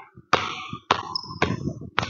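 Basketball bounced on a hardwood gym floor during dribbling practice, four bounces about half a second apart, each echoing in the gym. A short high squeak comes about halfway through.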